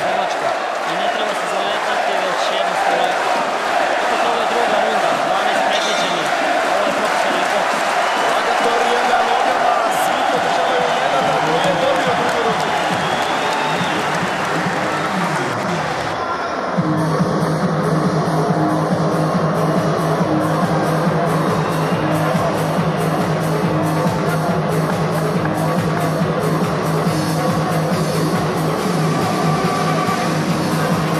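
Dense arena crowd noise with many voices, then about seventeen seconds in, electronic dance music with a steady beat cuts in abruptly over the hall during the break between rounds.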